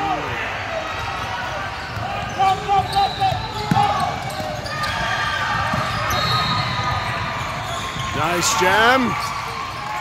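Basketball dribbled on a hardwood court with sneakers squeaking and players and spectators calling out, echoing in a large gym; a quick run of high squeaks comes near the end.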